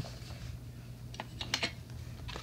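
A few light clicks and clatters of small plastic toys and accessories being handled, with the loudest quick cluster about a second and a half in, over a steady low hum.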